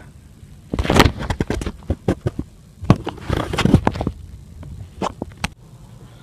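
Handling noise from a phone camera being moved about: two spells of rubbing and crackling, then a couple of sharp clicks near the end.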